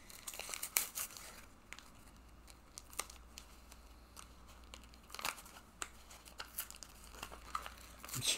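Foil Pokémon card booster pack wrapper crinkling as it is handled and pulled at, with scattered sharp crackles.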